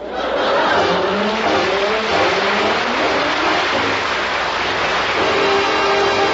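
Studio audience laughing and applauding at a punchline, a steady wash of clapping. Orchestra music rises underneath and grows clearer near the end.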